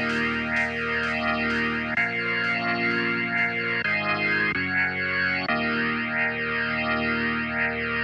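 Background music: a plucked guitar played through effects, with sustained chords changing every second or two over a steady pulse of notes.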